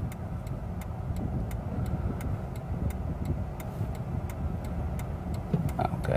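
Car cabin: steady low rumble of the idling car while it waits to yield, with an even ticking about three times a second from the turn-signal indicator.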